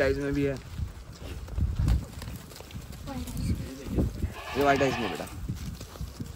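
Sojat goats bleating in a pen: a wavering bleat right at the start and a louder one about four and a half seconds in, with a weaker call just after three seconds and low thuds in between.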